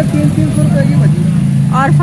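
Steady low hum of an engine running nearby, holding one pitch, under people talking.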